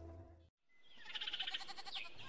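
A faint low hum cuts to dead silence about a third of the way in, then an animal's bleating call with a fast quaver fades in and grows louder.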